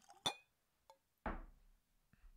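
Glass bottle and glassware being handled on a desk: a sharp glass clink about a quarter second in, then a duller knock a second later that dies away.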